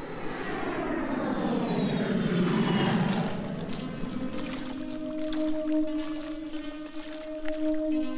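Boeing E-3A Sentry's four turbofan jet engines passing low overhead on climb-out, the jet noise falling in pitch as the aircraft passes and fading out about three to four seconds in. Music with steady held chords then comes in about halfway through.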